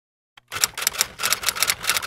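A rapid run of sharp clicks, about eight a second, starting about half a second in after a single faint click.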